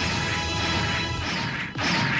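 A loud cartoon crash sound effect with music underneath, and a further sudden burst near the end.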